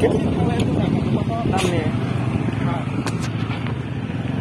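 Motorcycle engine running steadily under way on a rough dirt road, with faint voices talking over it.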